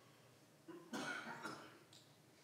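A person coughs briefly about a second in, over quiet room tone.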